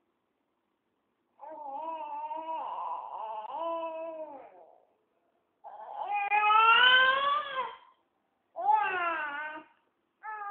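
Baby fussing and crying: three whining cries, the first long and wavering about a second and a half in, the second rising in pitch and the loudest, the third short near the end.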